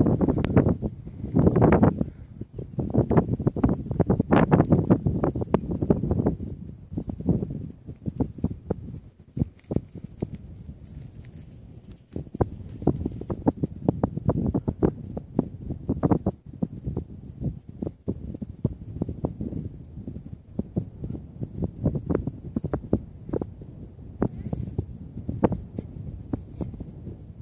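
Bicycle rolling over a gravel trail: a steady run of irregular knocks and rattles as the tyres and frame take the bumps, over a low wind rumble on the microphone.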